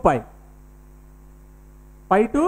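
A steady electrical mains hum, several faint unchanging tones, after a man's voice trails off on one falling syllable at the very start.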